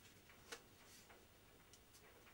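Faint clicks and crinkles of a thin clear plastic moulding being handled against a card template, with one sharper click about half a second in and a couple of small ticks near the end.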